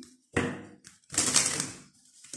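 A deck of oracle cards being shuffled by hand: a short rustling slap of cards, then a longer burst of cards sliding against each other lasting most of a second.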